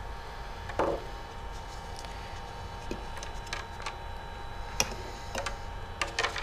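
Scattered light clicks and taps of a clear plastic centrifuge disposable and its tubing being handled in the centrifuge bowl, the sharpest click about five seconds in. A steady faint hum runs underneath.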